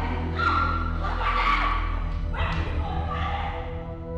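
Women screaming and shrieking without words during a physical scuffle, several loud cries in a row, over background music with a steady low drone.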